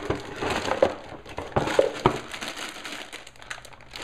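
Lego set packaging, plastic parts bags and paper, crinkling and rustling as it is handled, with a few sharp clicks between about one and two seconds in.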